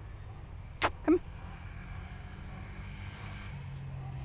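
Steady low outdoor rumble on a body-worn camera's microphone. About a second in it is broken by one sharp, brief sound and then a single short spoken word.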